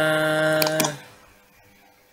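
A man's voice holding one long drawn-out hesitation vowel, even in pitch, that stops about a second in. Two quick computer mouse clicks come just before it stops, then near silence.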